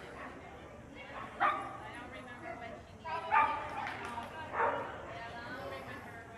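A dog barking: three sharp barks spaced a second or two apart, over a background murmur of voices.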